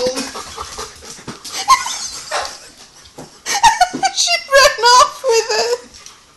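Dogs barking during play, mixed with a woman laughing. A sharp knock comes right at the start.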